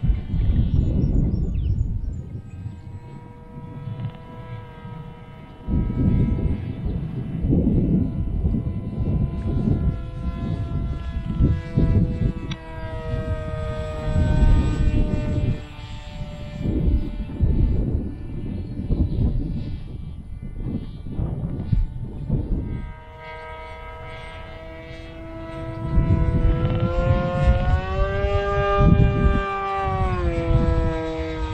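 Whine of an FX-61 Phantom flying wing's electric motor and propeller in flight, its pitch sliding up and down as it passes and changes throttle. Repeated gusts of wind buffet the microphone and are louder than the whine.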